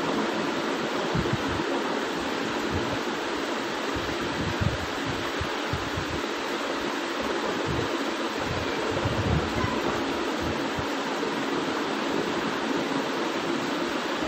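Steady hiss-like background noise from the recording, with scattered faint low thumps.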